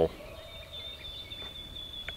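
Faint outdoor background in a pause between a man's sentences, with a thin, steady high-pitched tone running under it.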